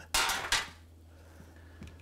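A brief clatter of a ceramic frying pan being handled on the stove, sharp at the start and over within half a second, then only a faint low hum.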